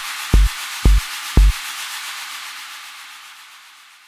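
The closing bars of an electronic dance track. A kick drum beats about twice a second and stops about a second and a half in, leaving a wash of white noise that fades out.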